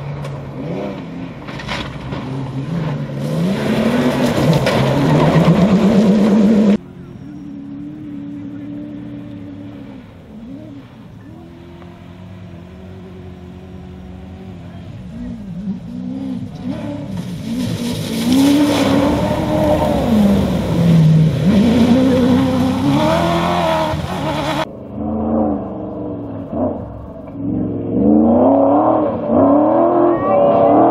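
Cross-country rally car engines revving hard as the cars race past on the stage, their pitch rising and falling again and again with gear changes. The sound changes abruptly twice, at about 7 s and 25 s, where the shots cut from one car to another.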